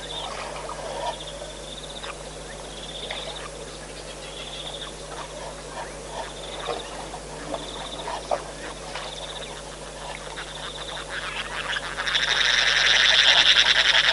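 Animal calls from the wetland: short, high, rapidly pulsed trills repeating about every second and a half over scattered lower calls. About twelve seconds in, a much louder chorus of fast pulsing calls swells in.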